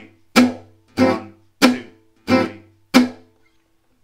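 Gypsy jazz rhythm guitar, la pompe, on an oval-soundhole acoustic guitar: an Am6 chord struck with a plectrum five times at an even pace, about every two-thirds of a second. Each chord is short and crisp, choked by easing the fretting hand off the strings just after the stroke, and the playing stops about three seconds in.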